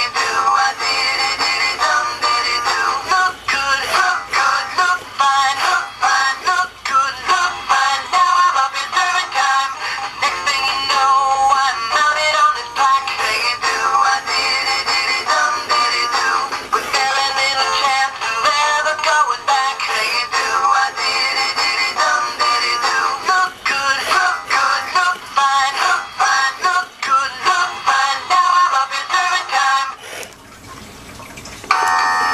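Travis Trout animatronic singing fish toy singing a pop song through its small built-in speaker, a thin sound with little bass. The song cuts off at the very end.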